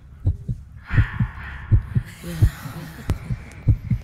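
Heartbeat sound effect: low double thumps repeating steadily about every 0.7 seconds, under a faint hiss.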